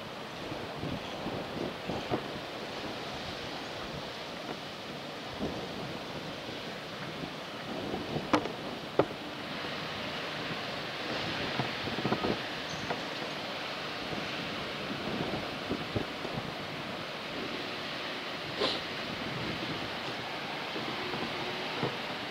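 Steady outdoor background noise, an even hiss with a few faint knocks and clicks scattered through it.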